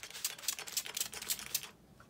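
Handheld spray bottle of plain water pumped rapidly at the face, several quick spritzes a second, each a short click and hiss. It stops shortly before the end.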